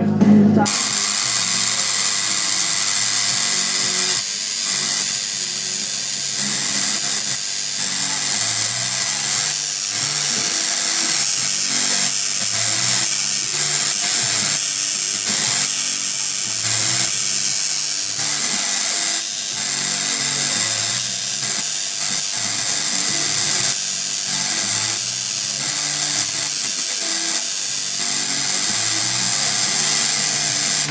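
Homemade Tesla coil's spark discharge from its topload, a loud, steady hiss-like buzzing noise.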